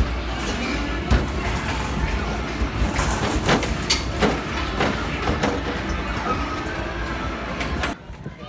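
Loud arcade din with a run of sharp knocks and thumps: basketballs being shot at arcade basketball machines, hitting backboards and rims and rolling back down.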